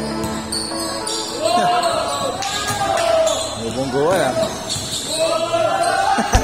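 Basketball bouncing on a hard court floor during live play, mixed with players' shouting voices in a large covered hall.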